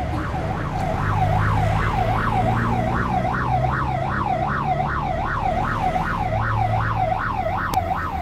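Ambulance siren in a fast wail, its pitch sweeping up and down about three times a second, with a low engine hum underneath.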